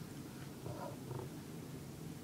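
Faint, steady low hum of room noise, with no distinct sound event.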